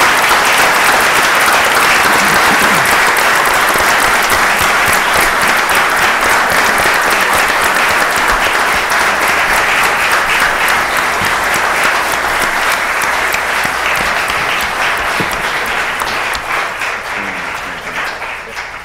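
Audience applause, a dense steady clapping that gradually tapers off near the end.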